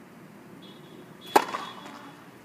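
A tennis racket strikes a tennis ball once, a sharp pop with a short ring after it, about a second and a half in.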